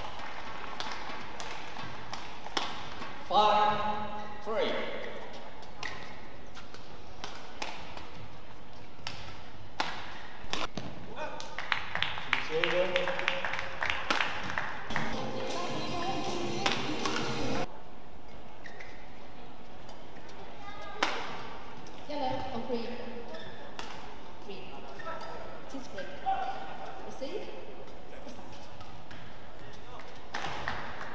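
Badminton rally sounds: rackets striking the shuttlecock in a series of sharp cracks, with a fast run of hits in the middle, and players' shoes squeaking on the court mat in an indoor hall.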